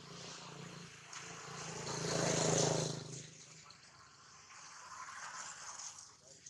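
A motor vehicle's engine passing: a low hum with a hiss that swells to its loudest about two and a half seconds in, then fades away.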